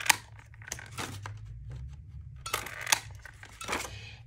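Hand-held circle paper punch snapping through sheets of paper, with a sharp snap at the very start and more snaps and paper rustling through the rest.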